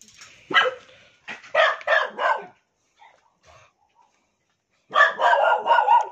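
Dog barking in short sharp barks: one about half a second in, a quick run of four or five barks after a second, a pause, then a loud burst of rapid barking near the end.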